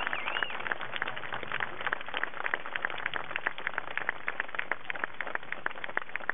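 A crowd applauding: many separate hand claps at an even, steady level.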